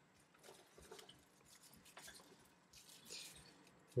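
Faint rustling and light scrapes of packaging being handled inside a cardboard box, with a slightly louder rustle about three seconds in.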